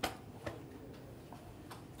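A few faint clicks and knocks of handling at the lectern and its microphone, over quiet room tone; the sharpest comes right at the start.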